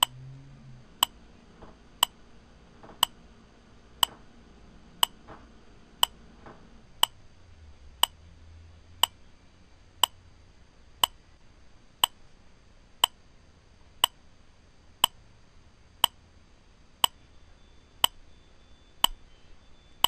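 Wall clock ticking once a second with sharp, evenly spaced ticks.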